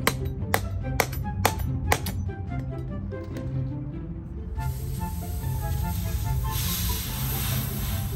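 Background music with a steady beat. About halfway in, a high, steady hiss starts and runs on: pressurised gas escaping from an aerosol shaving cream can as a kitchen knife pierces it.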